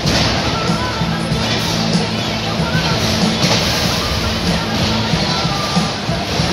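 Music playing over a loudspeaker system in a large hall, under a dense, steady wash of crowd and arena noise.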